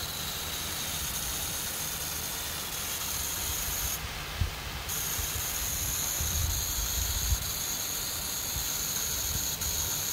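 Garden sprinkler spraying water over grass and plants: a steady hiss of spray, with two brief low thumps in the middle.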